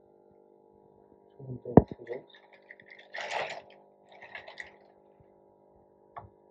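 Water sloshing and splashing in a tray as hands move tubing on an endoscope immersed in detergent solution, with a sharp knock a little under two seconds in and two short splashes in the middle.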